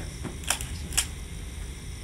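Two sharp camera shutter clicks, about half a second apart, over a steady low hum.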